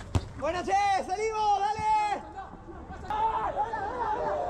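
Players shouting on a football pitch: one long, high-pitched shout lasting nearly two seconds, then another voice calling out near the end. A sharp knock sounds right at the start.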